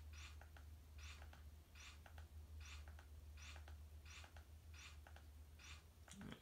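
Faint clicks of a TV remote control's buttons being pressed again and again, about one to two a second, over a low steady hum.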